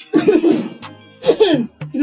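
Background music with a regular beat, over which a person makes two short, loud vocal bursts about a second apart.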